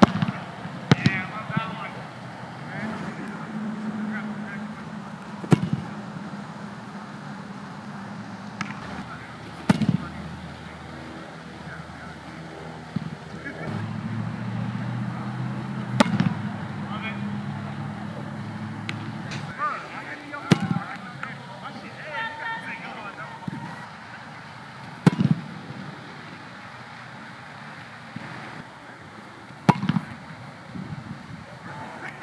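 A goalkeeper volleying footballs out of his hands: a sharp thump of boot on ball about every four to five seconds. A low hum rises and fades twice in the background.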